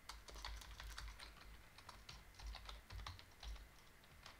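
Typing on a computer keyboard: a quick, irregular run of faint key clicks with soft low thuds from the keystrokes.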